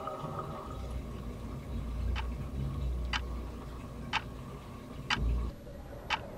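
A clock ticking, one tick about every second, beginning about two seconds in, over a faint low hum.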